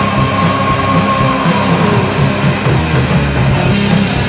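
Heavy metal band playing an instrumental passage of guitars and drums with a steady beat; a long held high note slides down in pitch about halfway through.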